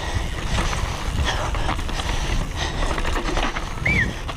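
Downhill mountain bike ridden fast over rough dirt and roots, heard from an onboard camera: steady tyre and wind rumble with constant rattling and clattering of the bike over bumps. A brief high squeak near the end.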